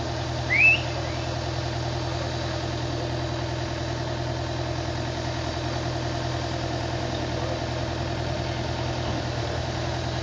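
Heavy diesel engine idling steadily, with a short rising whistle about half a second in.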